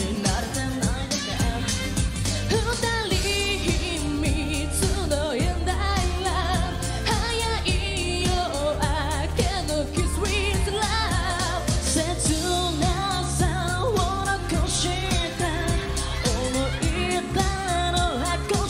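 Live J-pop song: women's voices singing into microphones over a pop band backing with a steady drum beat and bass.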